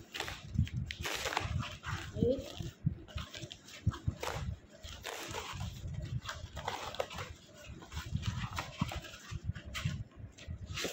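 A cardboard parcel being torn open by hand: packing tape ripping and cardboard flaps scraping and rustling in irregular bursts, with a short rising squeak about two seconds in.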